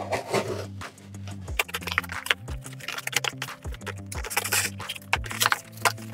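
Background music with a steady bass line, over repeated short scratchy scrapes of a small knife blade cutting through a corrugated cardboard box.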